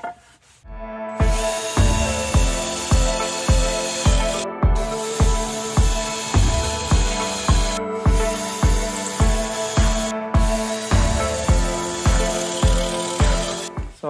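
Background music with a steady beat of about two beats a second and held synth-like tones, starting about a second in.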